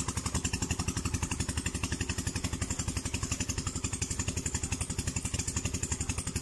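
A small engine running steadily at a low, even speed, with a rapid regular chugging pulse.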